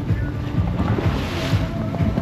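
Motorboat underway: wind on the microphone and water rushing past the hull, under background music.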